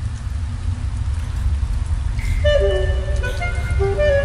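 Saxophone with electronics: a deep, steady electronic rumble under a faint hiss, joined about halfway through by a run of saxophone notes moving in steps.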